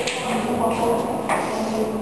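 Indistinct talking, no words made out.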